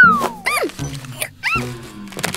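Cartoon sound effects over children's background music: a loud sliding tone falling away at the start, then two short rising-and-falling squeaks about a second apart.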